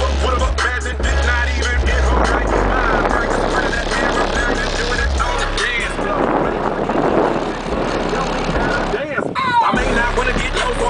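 A vocal hip-hop/pop song played loud through a Honda Fit's aftermarket car audio. Heavy bass comes from two JBL P1224 subwoofers on a new Lanzar amplifier pushing over 800 watts to each sub, heard from outside the car. The bass drops out briefly near the end.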